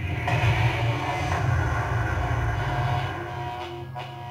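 Horror film trailer soundtrack: a sustained low rumbling drone with steady held tones layered over it, dying away near the end.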